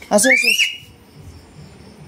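A small child's short vocal sound that rises into a high, thin, whistle-like squeal, held briefly and cut off about a second in.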